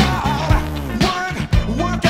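Funk record playing from vinyl on a turntable: a steady beat with heavy, sustained bass notes, drum hits and a melodic line gliding above.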